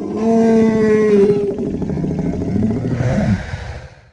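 Dinosaur call sound effect: one long, deep animal-like call that starts suddenly, holds a steady pitch for about a second and a half, then turns rougher and glides down in pitch before fading out at the end.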